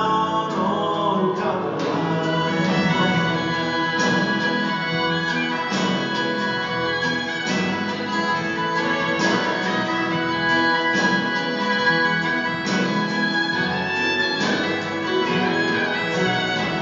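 Live band music in a soft folk style, with acoustic guitar, strings and singing, heard from far back in the audience of a large concert hall.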